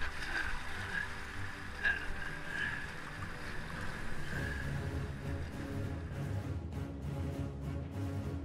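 Rushing river water and paddling noise from an inflatable kayak on choppy water, then background music with a steady beat comes in about four seconds in.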